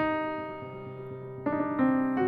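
Piano notes played slowly. The first note is struck at the start and rings on, then more notes come in about a second and a half in and near the end. They are picking out a C minor scale with a raised fourth, which gives a dark, spooky sound.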